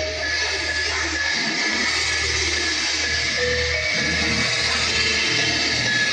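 Music playing loudly through a tractor-style speaker cabinet with two 12-inch woofers, with strong, deep bass that dips briefly a few times; the cabinet is being tested for its bass and voice quality.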